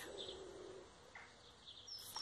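Faint garden birdsong: a low cooing call in the first second, with a few brief high chirps and short high whistles near the end.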